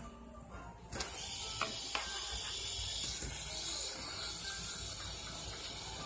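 Stacked fidget spinners flicked into a spin about a second in, then a steady high whir from their bearings with faint ticking as they keep spinning.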